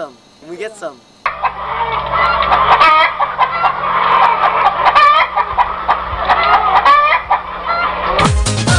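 A flock of chickens clucking and squawking, many birds at once. There are a few short falling calls at first, then from about a second in a loud, continuous clamour of clucks.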